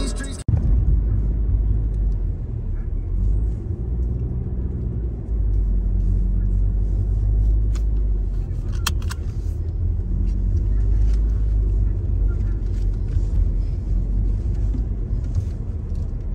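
Road and engine rumble heard from inside a moving car's cabin, steady and low. Music playing in the car cuts off abruptly about half a second in.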